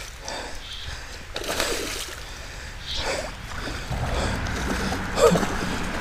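Creek water splashing and sloshing as a hooked smallmouth bass is fought at the surface and brought to hand, with irregular splashes getting louder toward the end.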